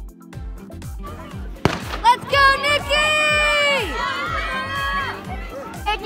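Background music with a steady beat; about a second and a half in, one sharp crack of a starter's pistol starts the 4x400 m relay. Right after it, spectators shout and cheer in long, high calls.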